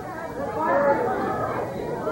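Studio audience calling out all at once, a jumble of many overlapping voices shouting to the contestant, typical of a game-show crowd yelling bid suggestions while she decides.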